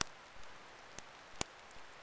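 Light rain falling: a faint, even hiss with three sharp ticks, the last two close together.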